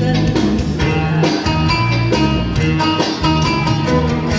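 A song played over the PA: a band backing track with guitar and drums, and a woman singing into a handheld microphone.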